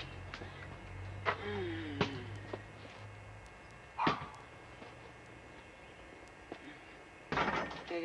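A basketball being shot and bouncing: a few separate knocks of the ball on the hoop and the ground, the strongest about four seconds in, with a faint voice in between.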